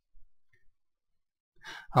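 Near silence with a faint low bump and a couple of tiny ticks. Near the end a man draws in an audible breath, like a sigh, and his voice begins.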